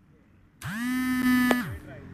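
A person's voice: one held call about a second long, steady in pitch, with a sharp click near its end.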